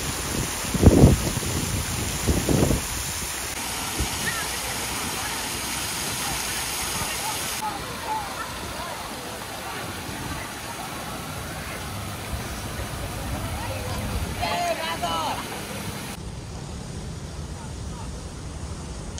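Fountain water splashing from jets and cascading over a stone ledge into the basin: a steady rushing. Two low thumps come about one and two and a half seconds in, and the rush grows lighter near the end as the fountain is left behind.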